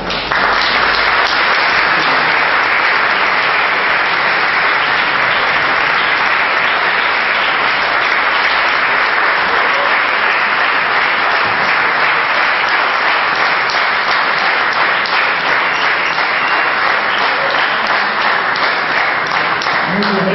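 Audience applauding: a long, steady round of clapping at the close of a speech.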